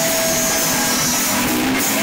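Heavy metal band playing live in a small rehearsal room: loud, heavily distorted electric guitars and bass blurring into a dense, saturated wash of sound.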